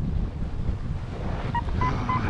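Wind rushing over the microphone of a paraglider in flight. About one and a half seconds in, a flight variometer starts sounding short high beeps, the sign that the glider is climbing in lift.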